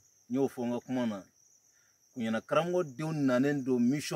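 A man speaking in short phrases, with a pause of under a second in between, over a steady high-pitched trilling of insects.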